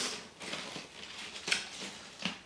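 Tortilla chips crackling and rustling in a paper bag as fingers pick through them, with sharper crackles at the start and about one and a half seconds in.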